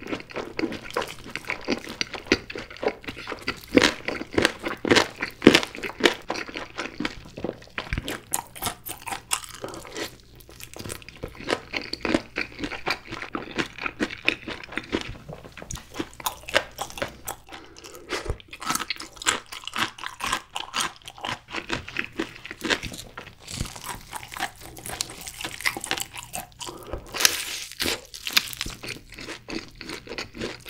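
Close-miked chewing and biting of sauced Korean fried chicken drumsticks: a steady run of crunches, wet smacks and crackles, with the loudest bites about four to six seconds in and again near the end.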